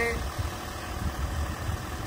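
Volkswagen Phaeton's six-cylinder engine idling with a steady low rumble.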